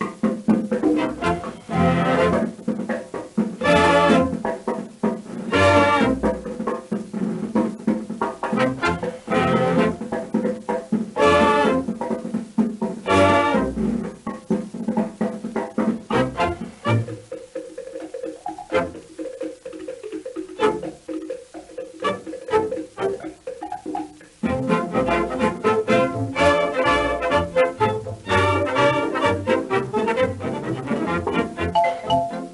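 A 1931 British dance-band recording in an instrumental passage with no singing. The full band plays loud accented chords about every two seconds, thins to a quieter stretch past the middle, and comes back at full strength near the end.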